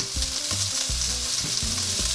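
Freshly grilled chicken wings and the oil beneath them sizzling steadily on the hot grill plate of a NuWave Primo grill oven.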